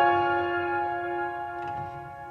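Slow, soft piano music: a chord struck at the start rings on and slowly fades.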